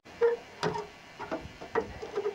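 A handful of short, sharp knocks and clicks, the loudest about a quarter second in: a dead branch being handled and knocked against a hard surface.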